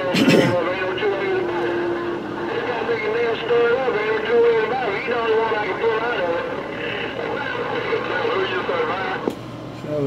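Galaxy CB radio receiving several stations talking over one another, garbled and unintelligible: replies to a call broken up by interference, which the operator calls "rough in my ear hole". The signal comes in with a burst at the start and drops out with a click about nine seconds in.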